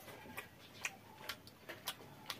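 Close-miked chewing of a mouthful of fermented rice and aloo bhujia: a run of sharp, wet mouth clicks, about two a second.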